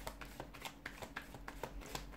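A tarot deck shuffled by hand, giving a quick, uneven run of light card clicks, about six a second.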